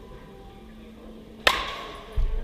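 A baseball bat striking a pitched ball once during a swing in a batting cage: a single sharp crack with a brief ring that dies away over about half a second.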